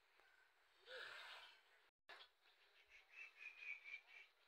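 Near silence: faint outdoor background hiss, with a brief faint sound about a second in, a momentary dropout at two seconds and a faint high chirping tone near the end.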